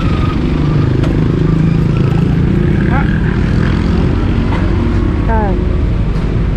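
Small utility truck's engine running, heard from its open cargo bed, a low rumble that strengthens a second or two in, with brief bits of voices.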